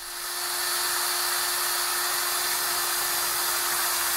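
DeWalt 18-volt cordless drill running at one steady speed, drilling a mounting hole in a metal gate post: an even whirring hiss with a constant hum that never changes pitch.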